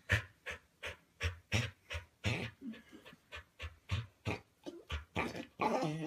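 A dog panting hard in a steady rhythm, about three breaths a second, some breaths carrying a whiny voiced edge that sounds like crying.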